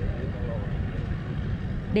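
Steady low engine rumble that starts suddenly and holds at an even level.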